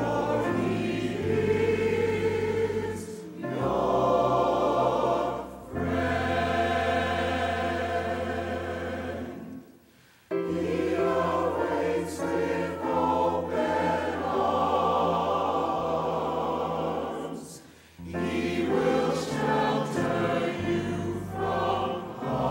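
Church choir singing together in full voice, the phrases broken by short pauses, the longest about ten seconds in.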